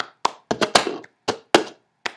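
Cup-song rhythm played with hand claps and taps on an upturned plastic cup and the tabletop. There are two sharp strikes, then a quick run of three, then two more spaced out.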